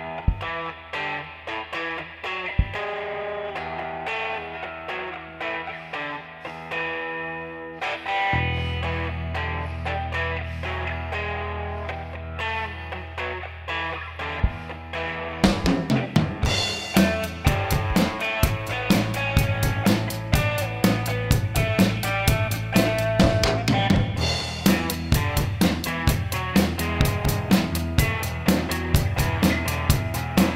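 Instrumental intro of a rock song by a guitar, bass and drums trio. Electric guitar plays alone at first, bass guitar comes in with sustained low notes about eight seconds in, and the drum kit enters about halfway through with a steady beat that gets busier near the end.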